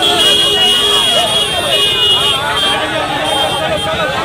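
Dense crowd shouting and cheering, many voices at once, with a shrill high steady tone that comes and goes over it.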